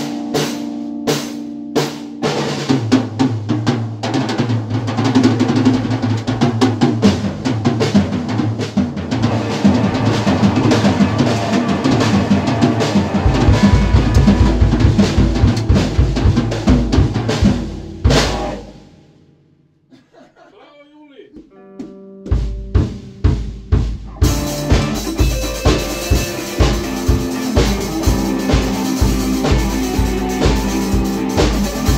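Live rock jam on a drum kit, with busy snare, bass drum and cymbal hits under electric guitar. About 19 seconds in the playing stops for roughly three seconds, then the drums start again with a steady beat and the guitar comes back in.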